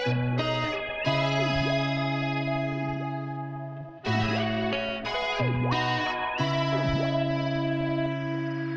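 Effected guitar melody in C sharp minor, with held chords re-struck about every second and no drums.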